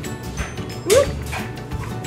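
A dog gives one short, rising yip, like a whine, just under a second in, over background music with a steady beat.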